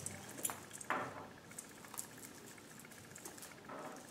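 Soft rustling and small clicks as hands handle a potted poinsettia, tucking a decorative pick in among its leaves in the planter.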